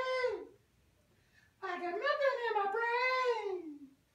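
A man singing unaccompanied in a high, wailing falsetto: one phrase trails off about half a second in, then after a second's gap a longer, wavering phrase that slides down and fades near the end.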